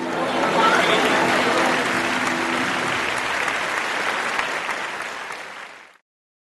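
Audience applauding, dense and even, fading out near the end. A few held tones sound beneath the applause in the first half.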